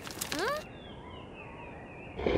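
Faint birdsong in a cartoon soundtrack, small high chirps repeating softly, with a short rising pitched sound near the start.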